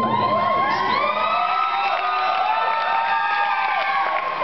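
Student audience cheering and screaming, many high-pitched voices overlapping in long held screams.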